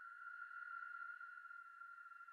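Faint, steady high-pitched drone of quiet background music, holding one tone without change.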